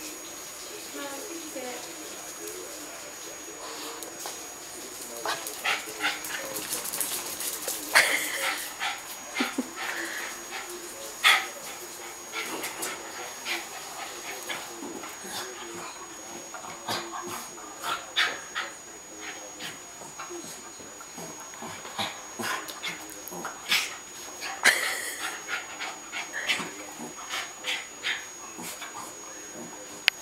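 A Cairn terrier rolling and rubbing itself on a wood floor and rug to dry off after a bath: irregular scrabbling, scratching clicks of claws and fur on the floor, with short dog vocal noises mixed in.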